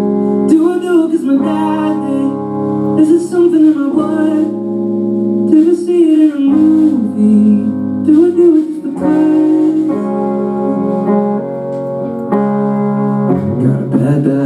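A man singing over his own guitar in a solo live performance: ringing, sustained chords with short sung phrases in between.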